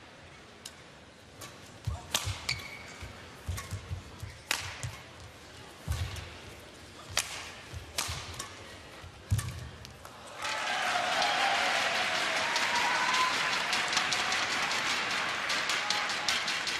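Badminton rally: sharp racket strikes on the shuttlecock at irregular intervals, mixed with thuds of footwork on the court. About ten seconds in, the rally ends and the arena crowd breaks into loud applause and cheering that carries on.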